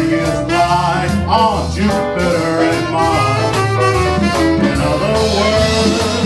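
Live jazz combo playing a swing standard, with drums, congas, bass and saxophone, and a male vocalist singing over the band.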